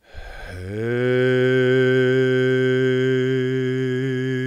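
A man's voice intoning one of the Hebrew letter names of the Pentagrammaton as a single long, low chanted note. The pitch slides up into place in the first half second and then holds steady.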